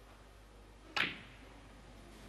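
A single sharp click of snooker balls colliding, the cue ball striking a red as a shot is played, dying away quickly.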